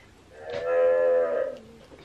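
Children's electronic toy laptop playing a recorded cow moo from its speaker after a letter button is pressed: one long moo starting about half a second in and lasting about a second.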